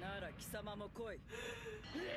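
Quiet dialogue from an anime episode: a character's voice speaking in short phrases.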